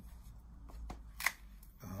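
Cardboard record box set being handled: a faint rustle and slide of card, with a few light clicks and one sharper tap about a second and a quarter in.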